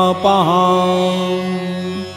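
Male voice chanting a Sanskrit devotional hymn, holding one long steady note at the close of a verse line, with a short dip in pitch near the start, over a steady instrumental drone; the voice stops near the end, leaving the drone.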